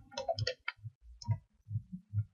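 Computer keyboard being typed on: a quick run of separate keystroke clicks, sharper in the first second and softer towards the end.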